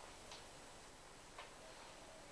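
Near silence: room tone with two faint ticks, one early and one about a second and a half in.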